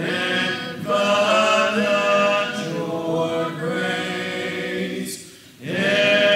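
A church congregation singing a hymn a cappella in parts, with no instruments. Near the end there is a short break between lines before the singing comes back in.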